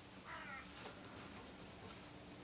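Quiet room tone with a faint steady hum, and a brief faint call about a third of a second in.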